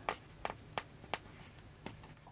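Faint handling sounds from hands working a stuffed cloth doll while pulling a button joint's thread tight: five small sharp ticks, four evenly spaced in the first second and one near the end, over quiet room tone.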